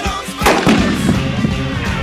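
A single loud explosion about half a second in, with a trailing rumble: a tannerite target detonated by a rifle shot. Rock music with a steady beat plays under it.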